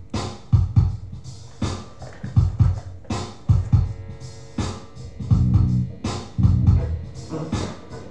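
Instrumental rock: an Ibanez electric guitar played over a backing track with a steady drum beat of kick and snare hits. Sustained low notes come in about five seconds in.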